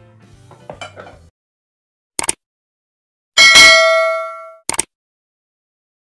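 Subscribe-button animation sound effects: a short mouse-style click, then a loud bell ding that rings out for about a second, then another short click.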